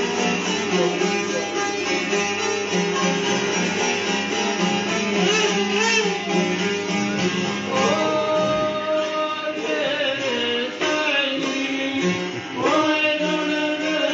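Albanian folk dance tune played on long-necked plucked lutes, with steady strummed and plucked string tones. A voice comes in singing the melody about halfway through, drops out briefly, then returns near the end.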